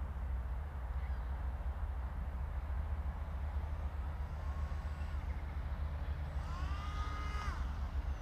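Wind noise on the microphone, a steady low rumble, with two short whining tones that each rise and then hold for about a second, one around the middle and one toward the end.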